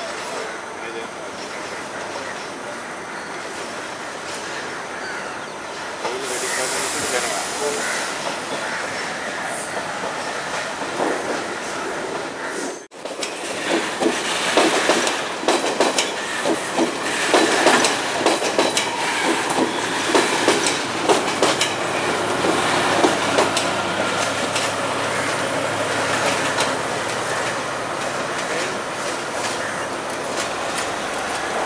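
Sri Lankan diesel power set running along the track. After a cut just before the middle, coaches pass close by with quick, irregular clicking and clacking of wheels over rail joints and points.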